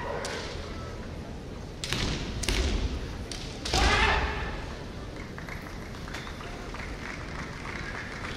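A kendo exchange: a few sharp knocks about two seconds in, from bamboo shinai striking and feet stamping on the wooden floor, then a loud drawn-out kiai shout just before halfway.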